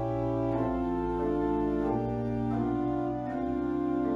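Organ playing slow, held chords, the bass note changing about every second.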